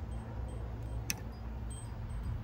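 Quiet outdoor background with a low steady rumble and a single faint click about a second in.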